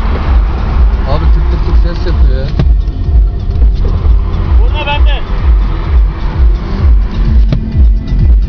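Car stereo playing electronic dance music with a pounding bass beat about twice a second, heard inside the cabin over the car's engine and road noise at highway speed. Brief voices cut in a few times.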